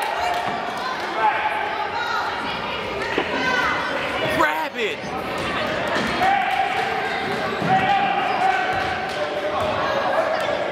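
A basketball bouncing on the hardwood floor of a large gym, under the voices of spectators.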